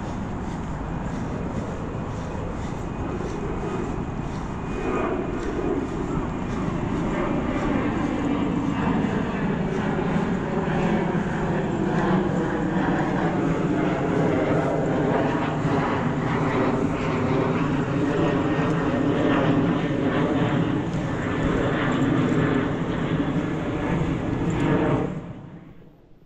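Aircraft engine noise overhead, swelling about five seconds in and holding loud, its pitch slowly falling as the plane passes. It cuts off suddenly near the end.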